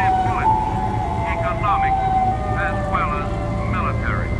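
Lo-fi electronic music made from cassette tape loops and synths: a steady low drone under a wavering synth tone that slowly slides down in pitch, with short chirping, voice-like fragments laid over it.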